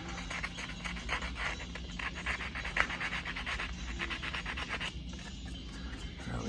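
Hand sanding with 80-grit sandpaper: quick, rhythmic back-and-forth strokes scuffing the molded plastic spoke of a 1968 Pontiac Firebird steering wheel around a V-grooved crack, keying the slick finish so the epoxy filler will bite. The strokes die away about five seconds in.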